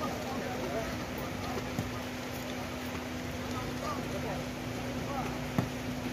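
Open-air match ambience: faint, indistinct distant voices of players and onlookers over a steady low hum, with one short click near the end.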